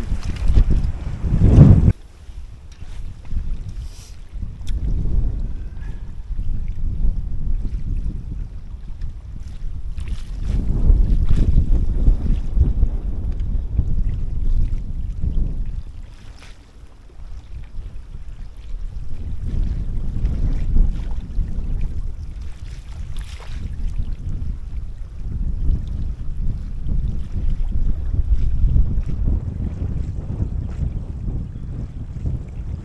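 Strong gusting wind buffeting the microphone: a low rumble that swells and fades in long waves, loudest in a sharp gust about a second or two in.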